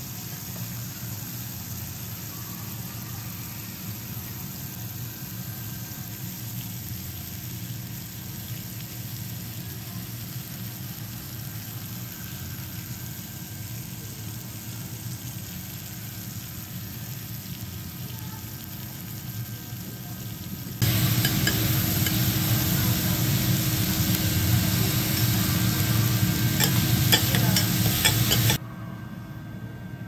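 Wagyu beef and chicken sizzling on a flat steel teppanyaki griddle, with a metal spatula scraping and tapping on the plate. The sizzling becomes much louder about two-thirds of the way through, and a few sharp clicks follow near the end of that louder stretch.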